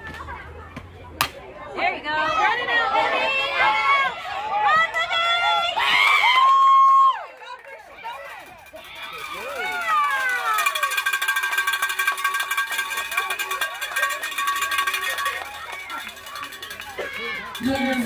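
High-pitched children's voices shouting and chanting from the softball team, with a single sharp crack about a second in.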